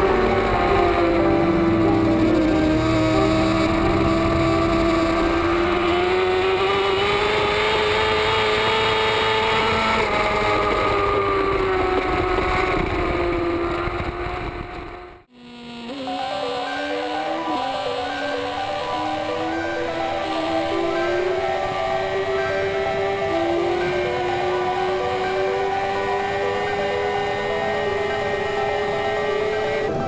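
BMW S1000RR superbike's inline-four engine at race speed, picked up by an onboard camera, its pitch rising and falling with the throttle. The sound dips out briefly about fifteen seconds in and comes back steadier, slowly climbing in pitch.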